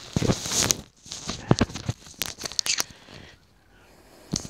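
Microphone handling noise: rustling, crackling and sharp clicks as a small handheld cabled microphone is rubbed against a beard and fingers. It dies away about three seconds in.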